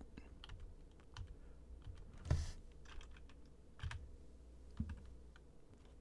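Computer keyboard keys pressed a few times, faint scattered clicks, the loudest a little over two seconds in.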